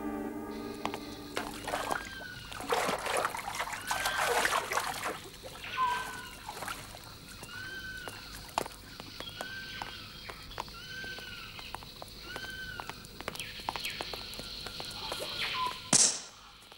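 Woodland ambience: a bird repeats a short rising-and-falling whistle about once a second over a steady high hiss. A few seconds of louder rustling noise come before the calls, and there is a sharp burst of sound at the very end.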